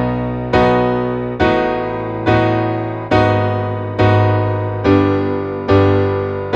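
Digital piano on an acoustic piano sound playing plain block chords in B major, without arpeggio, one struck chord a little under every second, each ringing and fading into the next.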